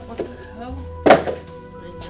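Background music, with one loud thunk about a second in as a cardboard box is set aside.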